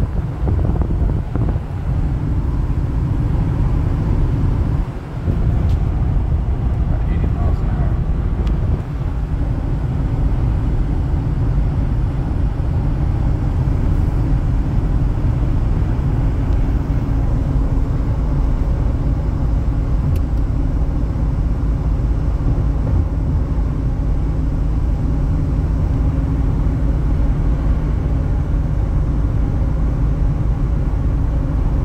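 Steady in-cabin highway noise of a 1996 Ford Thunderbird at cruising speed: road and tyre rumble with engine noise, heaviest in the low end, dipping briefly about five seconds in.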